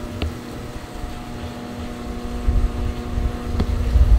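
Wind buffeting the microphone as low, uneven rumbling, over a steady low hum, with two faint clicks, one just after the start and one near the end.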